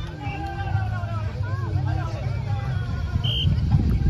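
Several voices of players and onlookers chattering and calling across a beach volleyball court over a steady low rumble, with one brief high-pitched tone about three seconds in.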